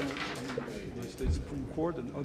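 Faint male speech in the background, quieter than the main voice, with a slightly louder phrase near the end: the speaker's original voice heard low beneath a simultaneous interpretation.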